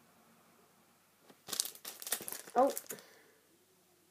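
Clear plastic packet of a rubber stamp crinkling in the hands as it is turned over: a run of crackles from about a second and a half in to about three seconds in.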